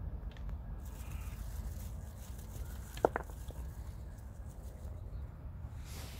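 Soft crumbling and rustling of potting soil being rubbed and shaken off a chilli plant's root ball by hand, over a steady low rumble, with one sharp click about three seconds in.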